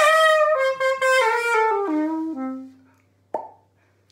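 Xaphoon bamboo pocket sax playing a descending run of notes, stepping down to a low note that is held and fades out. Near the end there is a single short pop.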